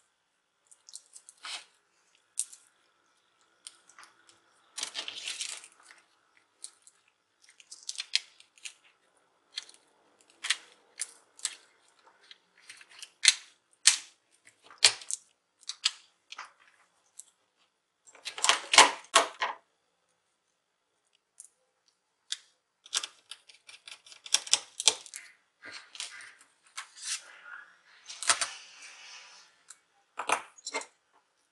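Irregular clicks, taps and short rustles of a Lenovo G570 laptop's plastic top case and small parts being handled, with a flat cable and board pressed into place. A louder cluster of clatter comes about two-thirds of the way in.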